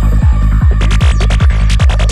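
Psytrance track: a steady four-on-the-floor kick drum, a little over two beats a second, over a rolling bassline. A crisp high percussion pattern comes in about a second in.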